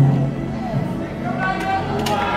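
A live band playing softly in a concert hall, with a few sustained notes under the room's background noise.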